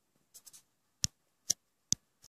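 Three short, sharp taps or clicks close to the phone's microphone, about half a second apart in the second half, after a little faint rustling: handling noise on the recording phone.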